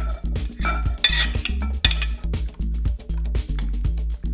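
Background music with a steady beat, over clinks and scrapes of a metal spoon against a glass mixing bowl as cubed raw fish is slid in and stirred, busiest in the first two seconds.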